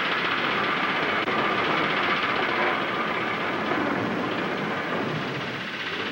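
Twin piston engines of a bomber droning steadily, an even noisy drone with no breaks.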